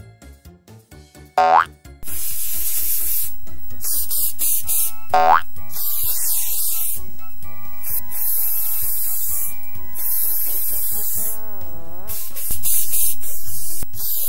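Cartoon sound effects over a children's music tune: two quick rising boing glides, and a loud steady spray-paint hiss from about two seconds in that breaks off briefly a few times.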